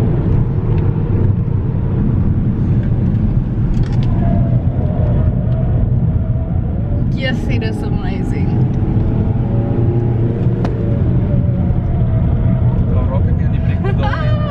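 Steady engine and road rumble inside a moving Volvo's cabin, with passengers' laughter and voices over it in the middle and near the end.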